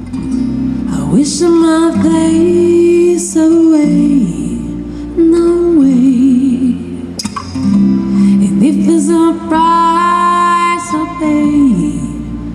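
A woman singing live into a microphone with vibrato on held notes, accompanied by a plucked acoustic guitar and a bass guitar.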